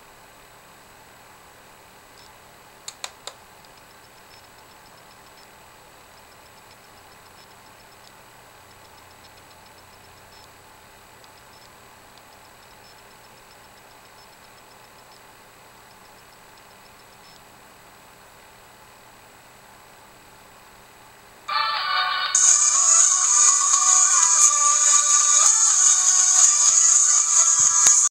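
Quiet room hiss with a few sharp clicks about three seconds in, then, about 21 seconds in, the Air1 internet radio stream starts playing music loudly from a laptop's speakers.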